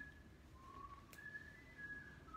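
Faint whistle-like tones: a few long, steady notes at different pitches, one after another, with a single click about a second in.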